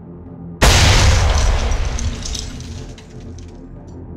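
A sudden loud boom about half a second in, with a deep low rumble, that dies away over about two seconds: a cinematic impact hit over a dark, low background score.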